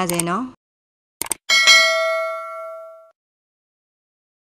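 Subscribe-button sound effect: two quick clicks, then a single bright bell ding that rings out and fades over about a second and a half.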